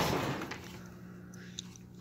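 Low steady electrical hum, typical of a fluorescent fixture's magnetic ballast running, under a broad rustling noise that fades out in the first half second; a couple of faint ticks near the end.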